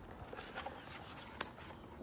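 Pages of a hardcover picture book being turned: a soft paper rustle, with one short, sharp click about one and a half seconds in.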